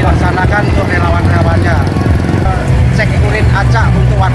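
A man speaking over the steady low rumble of motorcycle traffic going past.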